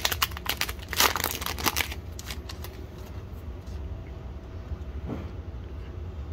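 Trading card handled and slid into a plastic penny sleeve: crisp crinkling and rustling for about the first two seconds, then quieter, sparser card handling, over a steady low hum.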